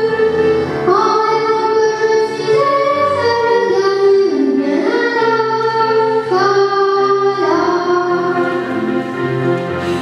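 A child singing a French song into a handheld microphone over an instrumental accompaniment, holding long notes that slide between pitches.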